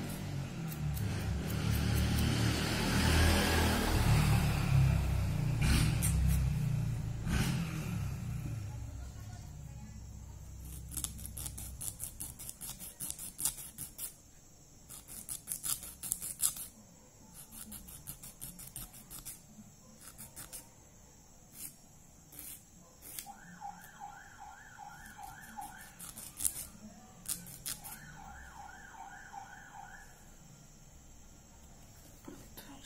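Short, scratchy strokes of a nail file rasping across natural fingernails, in bursts from about a third of the way in. Before that, a louder low rumble swells and fades. Near the end, a warbling, repeating electronic tone like a distant siren or alarm sounds twice, a couple of seconds each time.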